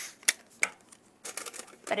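Clear sticky tape being handled, pulled off a small roll and torn into a strip: a few sharp clicks, then a short rasp of tape unrolling in the second half.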